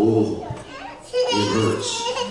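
Speech only: a man preaching in a loud, drawn-out delivery, with a long held vowel at the start and more rapid, rising phrases in the second half.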